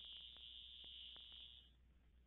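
Near silence with a faint, steady high-pitched electronic tone that cuts off near the end, over a low hum and a few faint ticks.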